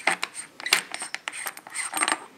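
Threaded metal eyepiece adapter being unscrewed by hand from the back of a Vixen VSD100 telescope. The threads give a run of quick, scratchy clicks and rubbing.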